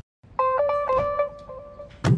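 Short electronic jingle of plain beeping tones: a quick run of notes, then a quieter held note near the end, starting after a moment of dead silence. It is a comic music sting.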